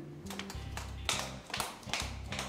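A quick run of sharp, irregular taps, several a second, over quiet background music with a low steady bass.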